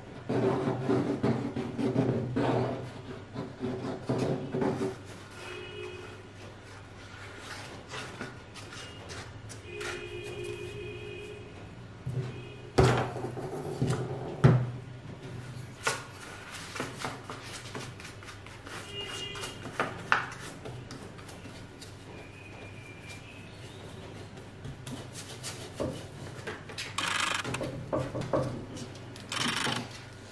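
Hand work on a wooden steamer trunk: scattered knocks and thunks, the two loudest about halfway through, with rubbing as glue is worked in and the covering is pressed down. Music plays in the background.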